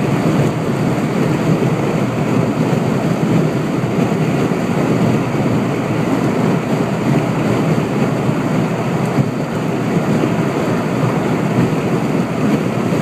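Steady rush of wind and road noise from a moving car, wind buffeting the phone's microphone.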